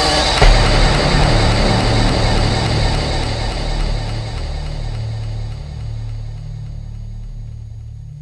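Closing bars of a dubstep track: a single hit about half a second in, then a low, sustained bass that fades out slowly as the high end drops away.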